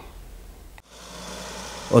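Road traffic: a lorry and a car driving along a road, a steady hiss of tyres and engines that starts abruptly about a second in.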